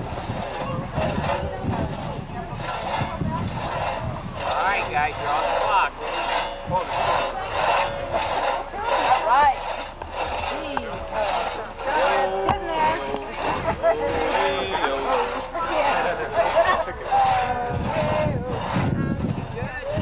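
Two-man crosscut saw being pulled back and forth through a log, rasping in a steady rhythm of strokes, with children's voices calling over it.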